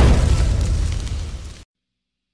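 A boom-like impact effect closing out a song: the loudest moment comes right at the start, and its noisy rumble fades over about a second and a half before cutting to silence.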